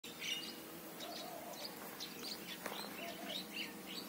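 Small birds chirping outdoors, a run of short high chirps throughout, with two lower wavering notes and a single sharp click about two-thirds of the way in.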